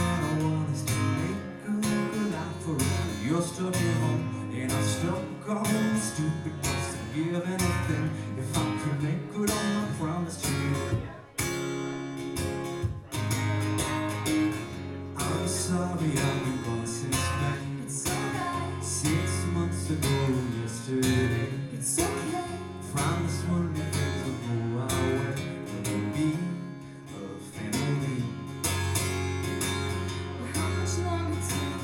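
Acoustic guitar strummed steadily under a man's singing voice, a live song with a brief break in the strumming a little before the middle.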